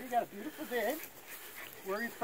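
A person's voice in short bursts, a sound or two in the first second, with no clear words.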